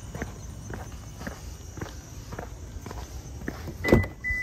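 Footsteps on an asphalt driveway, about two a second. Near the end comes a sharp click with a short high beep as the 2021 Subaru Outback's keyless entry unlocks the doors.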